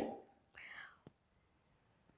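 Near silence in a small room between spoken sentences, with a faint breathy sound from the speaker about half a second in and a tiny click near the middle.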